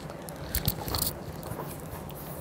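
Paper pages of a picture book being turned and the book handled: a short cluster of rustles and crackles about half a second to a second in.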